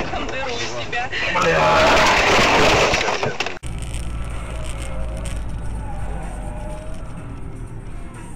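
Dashcam audio from inside a car: voices over the car's running noise, with a loud rushing noise building about a second and a half in and lasting around two seconds. Near the middle it cuts off suddenly into a different recording of steady low road and engine hum with faint music.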